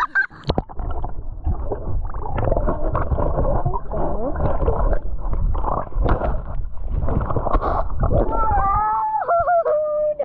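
Muffled, churning gurgle and slosh of lake water with the camera dipped under the surface and moving through it. Near the end a high, drawn-out voice calls out once the sound clears.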